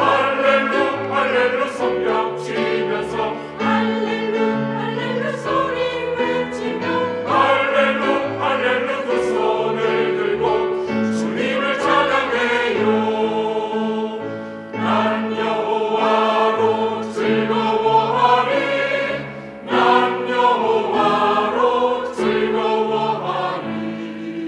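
Mixed church choir singing a praise song in harmony, the words 'hallelu, hallelu' among them, over a steady instrumental accompaniment with held bass notes.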